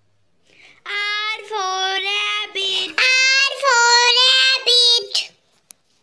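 A child's high voice singing two short phrases of held notes with no instrument behind it, starting about a second in. A brief click follows near the end.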